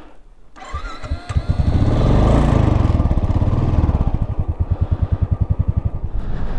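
Royal Enfield motorcycle engine being started: a brief whir from the starter, then the engine catches about a second and a half in and settles into a steady, evenly pulsing idle.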